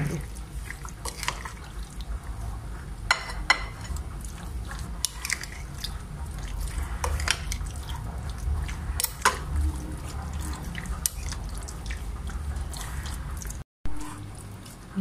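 A spoon stirring raw chicken pieces through a thick yogurt and spice marinade in a glass bowl: wet squelching, with scattered clicks and scrapes of the spoon against the glass.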